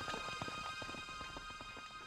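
Horses' hooves galloping: a quick, uneven run of hoofbeats over background music with long held tones.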